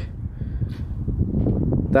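Low, steady rumble of wind noise on the microphone outdoors, with a couple of faint short sounds over it.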